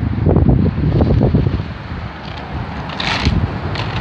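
Wooden push-along baby walker rolling over rough concrete, its wheels rumbling and the loose wooden blocks in its tray rattling. It is loudest for the first second and a half, then quieter, with a short scuff about three seconds in.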